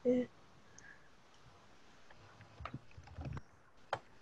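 Computer keyboard keystrokes: a few faint, scattered clicks in the second half, typing a search query.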